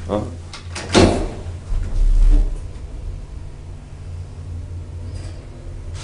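Old DEVE hydraulic freight elevator's doors working: clicks and a sharp bang about a second in, then a heavy low thump, over a steady low hum.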